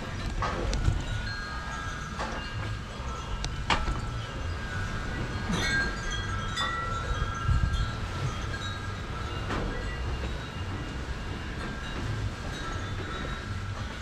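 Wind chimes ringing in the breeze, their tones held and overlapping. Under them is a steady low wind rumble on the microphone, with a few sharp clicks along the way.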